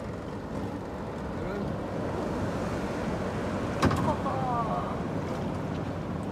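Wind on the microphone over open ocean water with waves breaking on a reef, a steady rushing noise, with one sharp knock about four seconds in.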